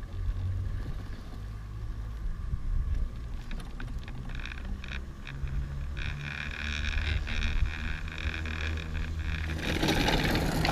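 Chairlift ride with a steady low rumble of wind on the microphone. From about six seconds in, the haul rope running over the lift tower's sheave wheels adds a high whine with clicking, which grows into a louder rush near the end as the chair reaches the tower.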